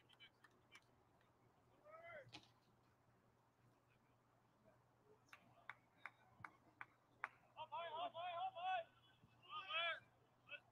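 Faint ballpark sound over a steady low hum. Scattered light clicks are followed by rapid runs of short, high-pitched shouted calls from distant voices, about two-thirds of the way in and again near the end.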